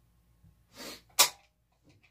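A person sneezes once: a short breathy intake followed by a sharp, loud burst, with a couple of faint handling clicks near the end.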